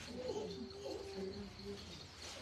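A dove cooing faintly in the background: a few soft, low notes, the second dropping slightly in pitch, over a steady high cricket trill.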